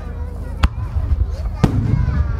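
Two sharp aerial firework bangs about a second apart, over a continuous low rumble.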